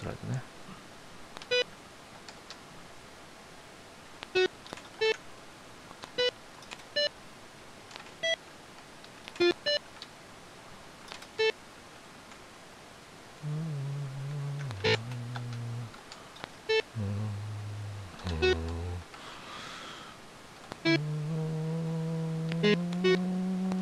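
Tab-notation software (Guitar Pro) sounding short single notes one at a time as they are entered, about a dozen separate blips spread out with pauses between them. From about halfway in come longer low notes, each held around a second, with a held note that rises slightly near the end.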